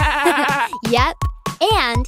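A cartoon lamb bleating: one quavering "baa" in the first half second, over background children's music.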